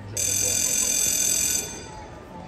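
Show-jumping start bell: a loud, steady, high-pitched electronic ring sounding through the arena for about a second and a half and then cutting off. It is the signal for the rider to begin the round and starts the countdown to the first fence.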